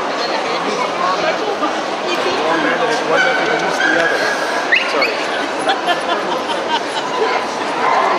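Small Bolognese dog vocalizing among the talk of people, with one long high note about two and a half seconds in that jumps up in pitch before it stops.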